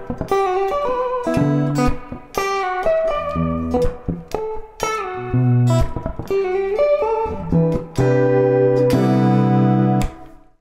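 Ibanez electric guitar playing a quick tapped lick, the tapped notes unphrased against a very fast wavering vibrato from the fretting hand. The lick ends on a long held note from about eight seconds in.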